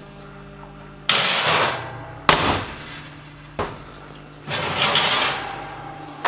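Handling at an open kitchen oven as a dish goes in: two loud scraping rushes of noise and a sharp knock about two seconds in, over a steady low hum.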